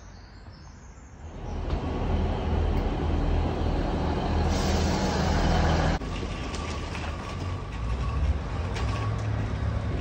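A train at a station platform, its low steady rumble and hum swelling sharply about a second in and cutting off abruptly at about six seconds. A quieter vehicle rumble with a faint steady tone follows.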